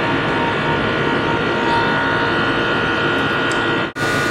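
Central air conditioning system running steadily while being charged with refrigerant: an even mechanical hum with a steady high whine.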